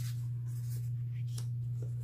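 Paper sticker sheets and cards being handled, a soft rustle with two light ticks in the second half, over a steady low hum.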